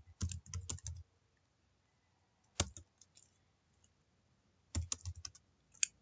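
Typing on a computer keyboard: a quick run of keystrokes in the first second, a lone keystroke about halfway through, and another short run near the end, with silent pauses between.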